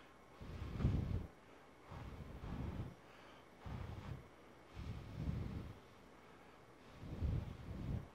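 Breath blown in five separate puffs into an Arcano ARC-MICAM shotgun microphone covered by a furry dead-cat windscreen, simulating strong wind. Each puff gives about a second of low-pitched wind noise on the microphone.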